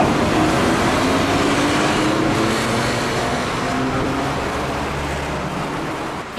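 Steady rumble of passing road traffic mixed with an Enoshima Electric Railway (Enoden) electric train at the platform, with faint motor tones that rise slowly in pitch.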